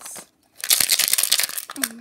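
A crinkling handling noise, a dense burst of rustles and clicks lasting about a second, as toys are picked up and moved.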